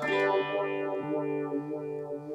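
Electric guitar played through a tremolo effect: a chord struck right at the start and left to ring, its loudness wavering as it sustains.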